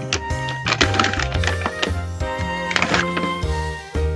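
Background music: a light instrumental tune over a bass line that steps to a new note about every half second, with clusters of sharp percussive hits.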